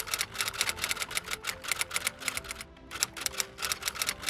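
Typewriter keys clacking in a rapid, uneven run of about seven or eight strokes a second, over quiet background music.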